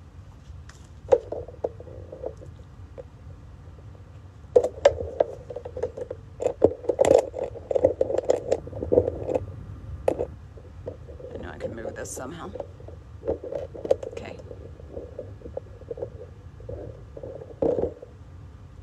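Handling noise from a phone camera being moved and repositioned: irregular rubbing, rumbling and sharp knocks, heaviest from about five to ten seconds in, over a steady low hum.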